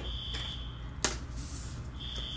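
Fire alarm sounding a long, steady, high-pitched beep at the start, then pausing for over a second. A couple of sharp taps fall in the pause, the louder one about a second in.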